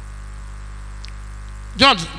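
Steady low electrical mains hum in the microphone and sound system during a pause in the speech, cut off by a man's voice saying "John" near the end.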